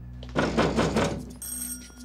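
An electric bell rings loudly for about a second, then a high ringing tone lingers briefly.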